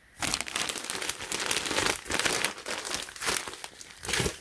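Clear plastic zip-top bag crinkling and rustling as it is handled and opened. The crinkling starts a moment in and runs on densely with uneven loudness.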